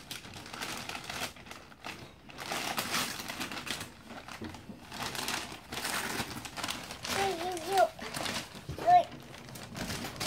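Gift-wrapping paper being torn and crinkled off a large cardboard box by small hands, in repeated rustling, ripping bursts.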